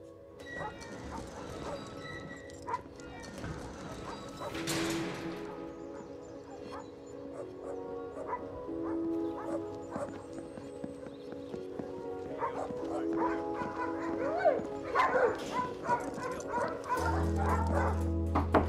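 Film score with sustained notes under dogs barking, the barking growing busier toward the end.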